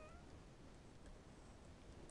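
Near silence: room tone, with one faint, brief rising squeak at the very start.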